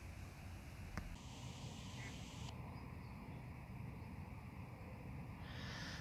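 Faint outdoor background: a steady low rush of wind, with a single click about a second in.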